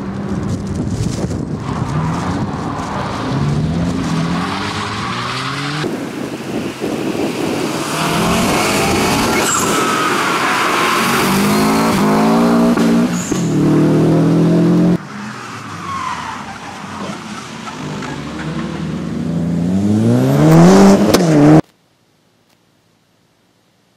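Rally cars driven hard on a tarmac circuit: engines revving up through the gears in repeated rising climbs, with tyres squealing, in several short clips cut together. The sound cuts off suddenly near the end.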